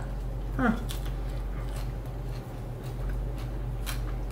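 A mouthful of crisp romaine lettuce being chewed: faint, irregular crunches over a steady low hum, with a sharper click near the end.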